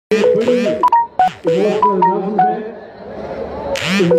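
A song playing: a singing voice over short, clipped keyboard notes in a quick melody.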